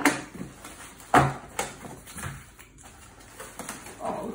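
Taped cardboard box being pulled open by hand: sharp rips and knocks as the flaps come apart, the loudest about a second in, then lighter rustling of cardboard and tissue paper.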